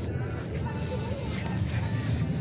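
Steady low outdoor background rumble, with faint distant voices.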